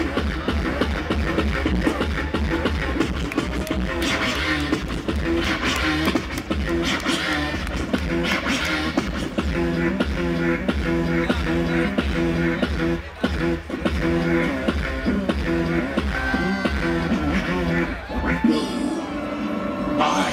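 A DJ mix played on two turntables and a mixer over a steady, bass-heavy beat, the record cut and scratched by hand: repeated short chopped stabs in the middle, with pitch-sliding scratches over the beat.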